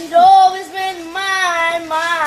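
A child's voice singing long held notes without words, the pitch wavering and sliding a little from note to note.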